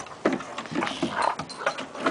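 Two dogs, a shepherd/retriever/pit mix and a flat-coated retriever, play-fighting: rough growls and snarls mixed with quick irregular knocks and scuffles of paws and claws on wooden deck boards.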